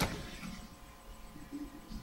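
Quiet room tone with a faint steady electrical hum, after a short click at the very start.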